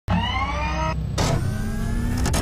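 Intro sound effect of a motorised whir: a low rumble with a tone that rises slightly in pitch, broken about a second in by a short rushing burst, then a fainter rising whine as the whir carries on.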